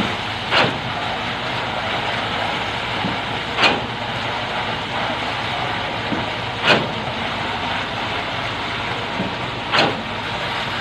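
Machinery engine running steadily, with a short sharp knock about every three seconds, four in all.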